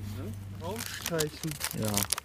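A sheet of paper crinkling as it is handled, a dense run of small crackles in the second half, with people talking over it.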